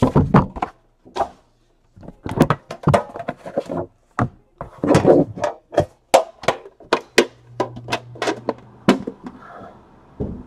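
Cardboard trading-card hobby box being handled and opened by hand: an irregular string of knocks, taps and scuffs as the box and its inner packaging are moved and set down. A faint low hum sits under the handling for a second or so near the end.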